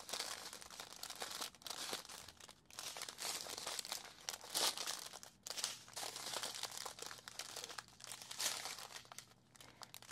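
Strips of small plastic bags of diamond painting drills crinkling as they are handled and shuffled, in irregular rustles throughout.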